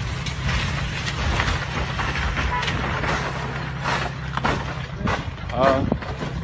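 A steady low hum with scattered knocks and clicks, and a person's brief wavering cry near the end.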